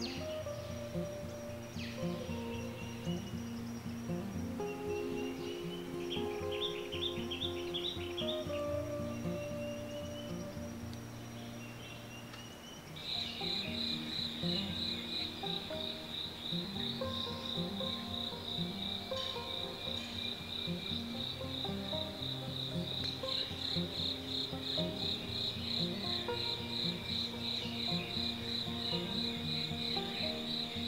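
A high-pitched insect trill, a rapid even pulsing like a cricket's, starting a little before halfway and running steadily on, over soft background music. Fainter, scattered insect chirps come before it.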